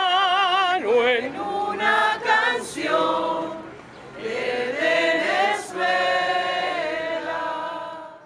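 Choir-like singing with long held notes and vibrato, dipping briefly about halfway through.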